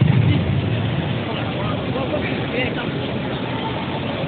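Steady low rumble of a large indoor sports hall, with faint scattered chatter of onlookers over it; the rumble is a little louder in the first second.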